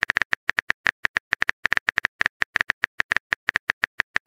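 Rapid, irregular clicking of a keyboard-typing sound effect, about seven or eight sharp clicks a second.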